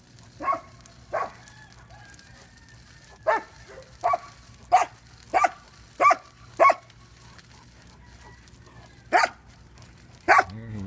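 Dogs barking: about nine short barks, two near the start, a quick run of six in the middle, then one more near the end after a pause.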